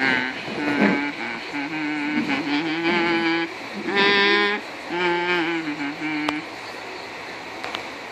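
A person's voice imitating a steam engine's whistle: a series of held, steady 'ooh' hoots, followed by a single sharp click about six seconds in.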